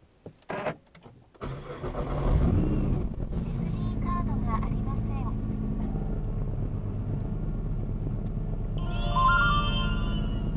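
Nissan GT-R's 3.8-litre twin-turbo V6 starting: a short crank, the engine catches about a second and a half in and flares up in revs, then settles into a steady idle.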